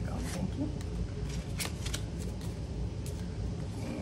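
Paper bills and laminated cards being handled and set down on a tabletop: scattered light rustles and taps over a low steady background hum.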